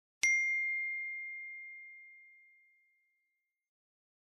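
A single bell-like ding from a logo sting, struck once just after the start. It rings on one clear high note and fades away over about two seconds.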